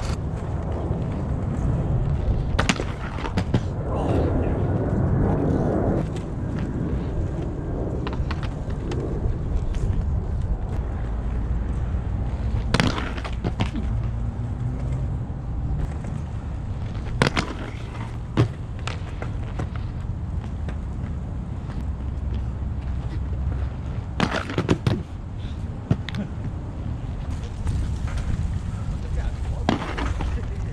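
Wind buffeting the microphone, with scattered sharp clacks of aggressive inline skates hitting concrete. A cluster of loud knocks comes a few seconds before the end as the skater lands on a grind ledge.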